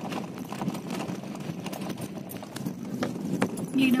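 A car driving over a rough dirt track, heard from inside the cabin: a steady low road rumble with irregular knocks and rattles as the tyres and suspension go over stones and ruts.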